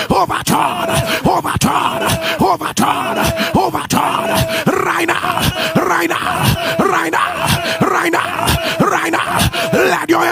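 A preacher's loud, rapid, wordless prayer vocalizing over steady sustained keyboard chords.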